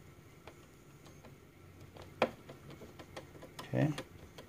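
Faint, scattered light clicks and taps, one sharper click about two seconds in, from a flathead screwdriver and hands working at the plastic back of a computer case near a screw.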